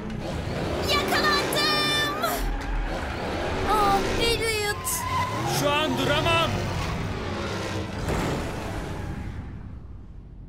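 Cartoon soundtrack mix: music under sped-up car engine and tyre-squeal effects from toy race cars looping a track, with a giant cartoon gorilla's wavering vocal grunts coming in several times. The mix fades toward the end.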